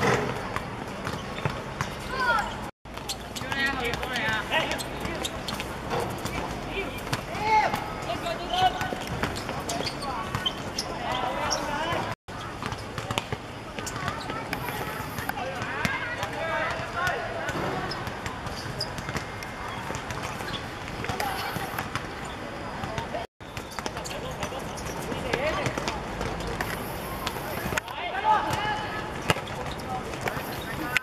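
Voices of players on a hard-surface football court, with thuds of the ball being kicked and bouncing. The sound drops out to silence briefly three times.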